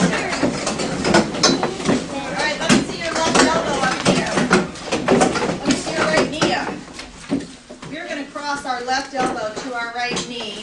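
A class of children chattering and moving about while wooden-and-metal classroom chairs are pushed in under tables, giving many short knocks and scrapes. The noise falls off about seven seconds in, then voices pick up again near the end.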